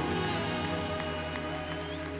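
Live worship music from a band and singers: a sustained chord with a long held note, easing slightly in level, with faint scattered clicks over it.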